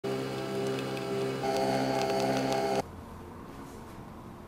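Nespresso capsule coffee machine running as it brews into a mug: a steady hum of several pitches that shifts up in tone and gets a little louder about one and a half seconds in, then cuts off suddenly just before three seconds in.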